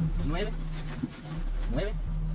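A man's voice quietly counting numbers aloud in Spanish while handing over banknotes, a few short spoken counts over a steady low hum.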